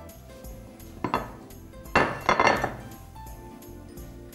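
Thin sheets of dough and a cloth kitchen towel being handled on a counter, making a short rustle about a second in and a louder, longer rustle around two seconds in, over background music.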